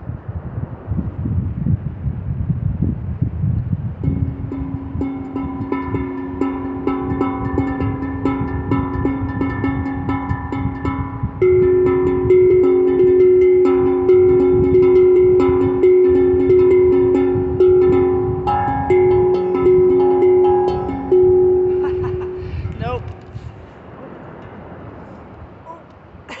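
Steel tongue drum played with mallets, ringing pitched notes over wind buffeting the microphone. About a third of the way in, one note starts being struck again and again, loud and ringing, about once a second, and the playing dies away a few seconds before the end.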